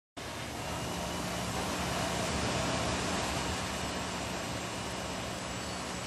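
Steady ambient noise with a low, steady hum underneath and no clear single event.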